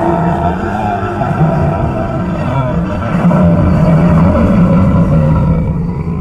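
A loud, low rumbling roar sound effect, a monster-style growl that runs on and eases off near the end.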